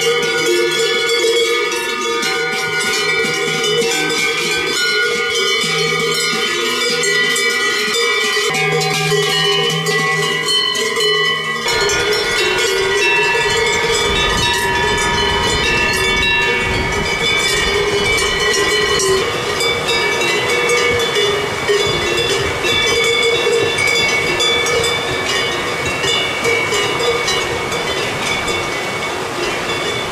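Many large cowbells on a herd of Brown Swiss cows clanging continuously as the cows walk. From about twelve seconds in, the rush of a fast mountain stream joins the bells.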